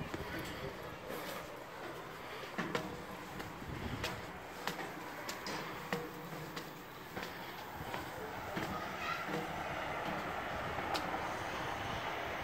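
Footsteps climbing a steel spiral staircase with diamond-plate treads: irregular sharp knocks of shoes on the metal steps over a steady background hiss.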